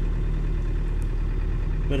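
Optare Alero minibus engine idling with a steady low hum, heard from inside the cab.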